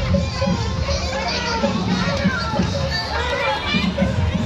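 Roadside crowd with many children's voices chattering and calling out at once.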